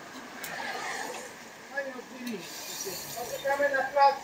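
Indistinct talking among a group of cyclists over a steady hiss of wind and riding noise, with a voice coming through more clearly near the end.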